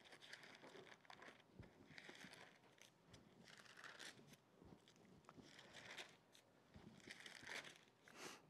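Thin Bible pages being turned by hand, faint paper rustles in four short bouts, the last and loudest near the end.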